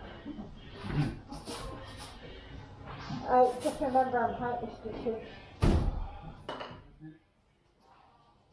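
Knocks and thuds from handling the cut-out fibreglass cabin-roof section of a catamaran, several light knocks and one heavy thud a little before six seconds in, with people talking indistinctly alongside.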